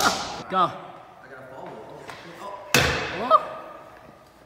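A single loud slam about three-quarters of the way through, sharp at the onset and dying away quickly in the echo of a large indoor hall, the sound of a hard landing. A shout of "Go!" comes near the start and a short cry right after the slam.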